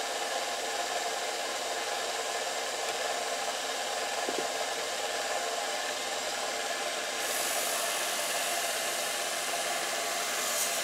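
Belt sander motor and belt running steadily. About seven seconds in, a steel knife blade held in a bevel jig is pressed to the belt and a hiss of grinding joins in.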